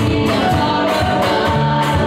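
Three girls singing a gospel song together into handheld microphones, held notes in several voices over instrumental accompaniment with a bass line and a steady beat.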